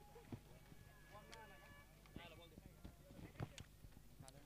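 Near silence: faint, distant voices with a few soft ticks over a low steady hum.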